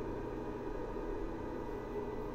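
EAFC Narzrle 3000W pure-sine inverter running under a 1 kW load: its cooling fans give a steady whir over a low electrical hum of several steady tones.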